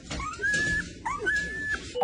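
Golden retriever puppy whining twice in high, thin calls, each one rising and then held briefly for about half a second.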